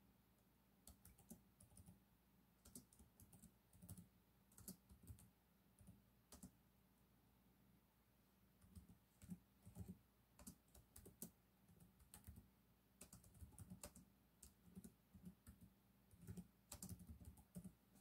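Faint typing on a computer keyboard: irregular keystrokes and clicks, with a short pause about seven seconds in.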